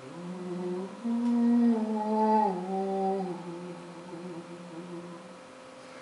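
Overtone singing: a man's voice holds a low hummed drone, stepping up in pitch about a second in while its upper harmonics are brought forward and shift, then gliding down about halfway through and fading away near the end.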